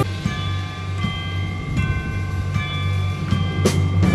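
A high-school wind band playing held chords over a low rumbling roll, with a sharp crash at the start and another near the end.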